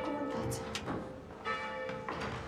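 A church bell ringing on from a strike, then struck again about a second and a half in, its tones dying away.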